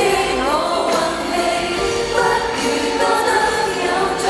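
Live Cantopop performance: a female duo singing a slow song into handheld microphones over band accompaniment, heard through the arena's sound system.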